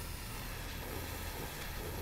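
Steady hiss over a constant low hum from a running wood-pellet gasifier rig with its air feed on.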